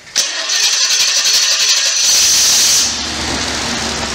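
A V8 generator engine fuelled by LPG being started from its control panel. The starter motor cranks it for about two seconds, then the engine fires and catches. The starter whirr cuts out near three seconds in, and the engine settles to a steady idle.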